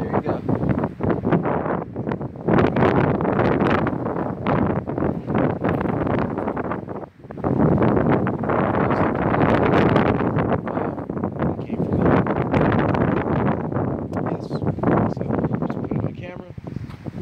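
Wind buffeting a phone's microphone in strong gusts, a loud rumbling rush that rises and falls, with a brief lull about seven seconds in.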